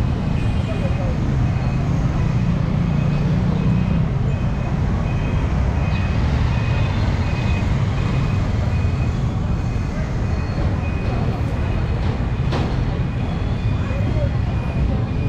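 Busy city street traffic: motorcycle and van engines running with a steady low rumble, and a high electronic beep repeating about twice a second. A single sharp click sounds near the end.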